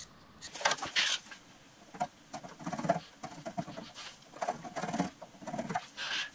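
Hand scraper cutting into the base of a 7x12 mini-lathe's headstock casting: a run of short, irregular scraping strokes, about three a second. The metal is being taken off the high spots to bring the spindle into horizontal alignment with the bed.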